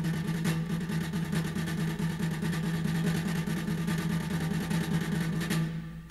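Flamenco guitar played as a rapid, unbroken roll of strokes over one held chord, dying away shortly before the end, with a fresh strike right at the close.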